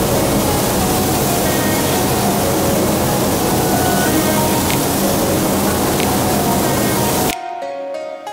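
Gravity-feed paint spray gun hissing steadily as it sprays paint, cutting off suddenly near the end. Background music plays underneath throughout.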